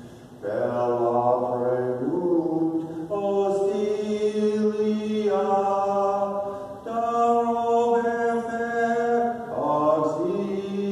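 Slow sung chant in long held notes, the pitch stepping to a new note every second or two, after a brief pause at the start.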